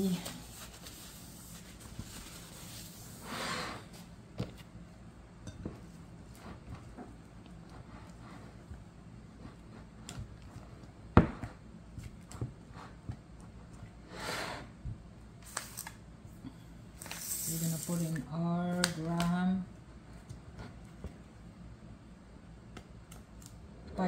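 Spatula stirring and scraping a thick peanut butter cream-cheese filling against a glass mixing bowl, in scattered short scrapes, with one sharp knock about eleven seconds in. A woman's voice is heard briefly about three quarters of the way through.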